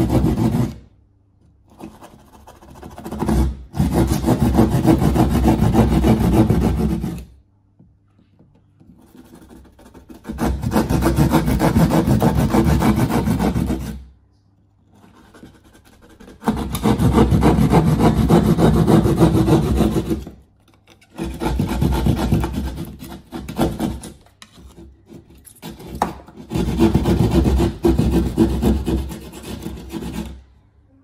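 Plasterboard (gyprock) saw cutting through a plasterboard wall with quick back-and-forth strokes. It saws in bouts of three to four seconds with short pauses between them.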